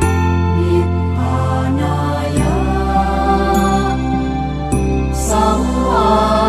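Slow, drawn-out Pali chanting of a Buddhist sutta over sustained instrumental music, one held note gliding upward partway through.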